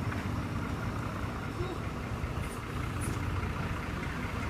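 A city bus engine idling close by, a steady low rumble.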